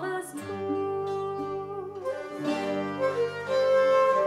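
Instrumental passage from a Renaissance mixed consort: plucked lute and cittern with bowed bass and treble viols and a Renaissance flute, playing an English broadside ballad tune with steady held notes over a low bowed bass line.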